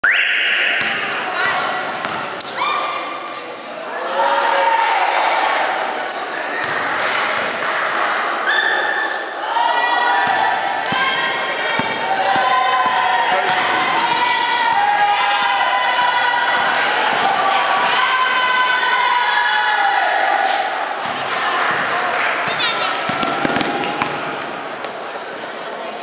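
A basketball being dribbled hard on a sports-hall floor in quick repeated bounces, under the high shouting of many children's voices.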